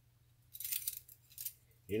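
A ring of metal measuring spoons jingling as they are turned over in the hand, in a short burst of clinks about half a second in and a smaller one shortly before the end.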